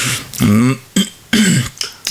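A man's voice making a few short, hesitant voiced sounds between sentences, with a breath near the start.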